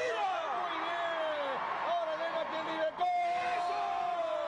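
A Spanish-language TV sports commentator shouting excitedly in long, drawn-out calls over crowd noise as a volleyball rally ends in a point.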